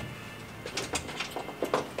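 A heavy twin-drawer unit being shoved and settled on an SUV's cargo floor: a run of short, light knocks and scrapes starting about half a second in.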